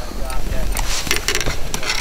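Scattered light clicks and clatter from a fish and fishing gear being handled in a kayak, over a low steady rumble.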